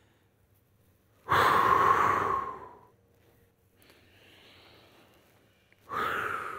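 A person breathing out audibly through the mouth: a long exhale about a second in that fades away over about a second and a half. A faint breath in follows, and another exhale begins near the end. These are the paced breaths of a warm-up exercise, breathing out as the elbows close together.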